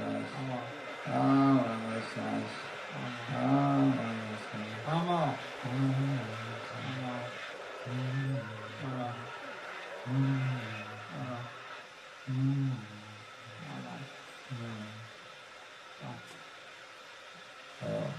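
Low, wordless, wavering vocal moans in slow repeated phrases, part of a live experimental music performance. They grow quieter and sparser toward the end.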